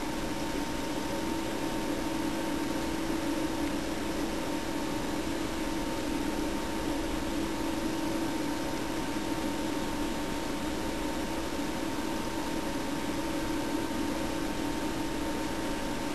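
Steady room noise: a low hum with an even hiss, unchanging throughout, with no distinct taps or other events.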